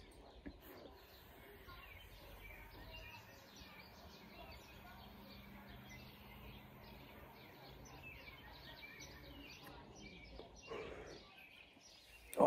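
Near silence: faint outdoor background with scattered distant bird chirps while a vape pen is drawn on, and a short louder breath, the exhale of the hit, about a second before the end.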